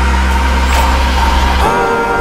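Soundtrack music: a held deep bass note under sustained tones. The bass cuts off near the end as new gliding tones come in.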